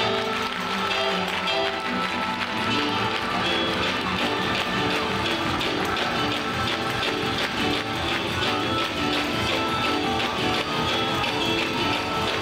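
Up-tempo gospel music with sustained keyboard chords and a fast, driving beat, with hands clapping along.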